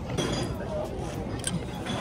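A light clink or two from a glass ramune soda bottle, the kind sealed with a glass marble, as it is handled, over a low murmur of background voices.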